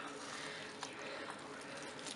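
Soft scraping and squishing of metal tongs and a serving fork pulling apart slow-cooked pork shoulder in a cast-iron Dutch oven, quiet, with a few faint ticks of utensil on meat or pot.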